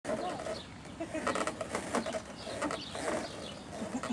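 Indistinct background voices mixed with short chirps and a few brief knocks.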